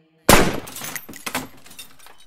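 A sudden loud bang about a third of a second in, followed by a quick scatter of smaller cracks and clatters that fade away over about two seconds: a crash or gunfire sound effect closing the track.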